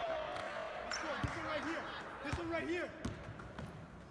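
A basketball bouncing a few times on a gym floor, dull thuds about a second in and near the end, with voices of people in the gym behind it.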